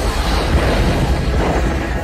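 Film sound effects of meteors striking a building: a loud, continuous rumbling crash with a heavy low end.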